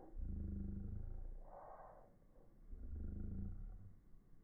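Slowed-down slow-motion audio: two deep, drawn-out growl-like tones, about a second each, one at the start and one about three seconds in, with a brief hiss between them.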